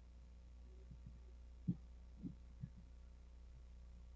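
Near silence: a steady low hum with a few soft, low knocks in the first half.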